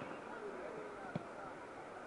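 Faint murmur of voices in the background, with one short sharp click a little past halfway.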